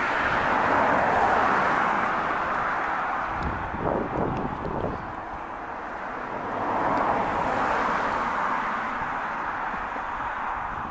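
Outdoor background hiss with no clear single source, swelling about a second in, easing off in the middle and swelling again around seven seconds.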